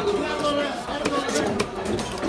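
Fish-market chatter in the background with a few sharp knocks of a large knife cutting into a big rohu fish on a wooden chopping block, in the second half.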